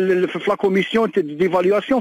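A man speaking continuously in Algerian Arabic, a monologue with a thin, band-limited voice.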